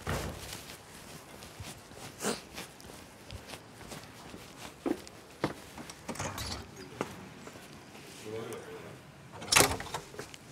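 A house door shutting, a loud bang near the end, after a few scattered knocks and footsteps on paving.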